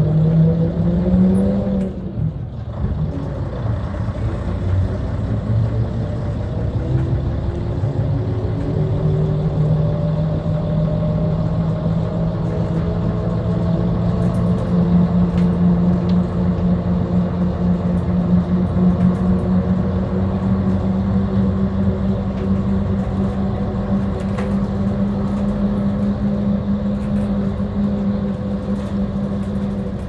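Bus engine heard from inside the cab while driving, a steady drone whose pitch climbs in the first two seconds, drops briefly around two seconds in, then holds steady with a slow rise.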